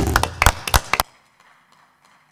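A few people clapping, a quick run of sharp, uneven claps that cuts off abruptly about a second in.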